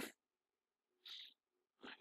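Near silence: room tone, with one faint short hiss about a second in.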